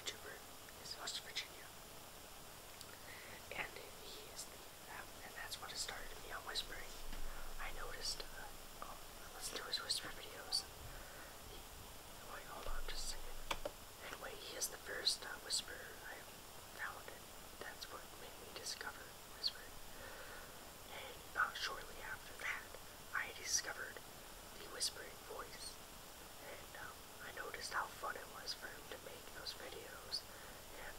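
A person whispering in short phrases with brief pauses, the speech breathy and unvoiced, with crisp hissing 's' sounds.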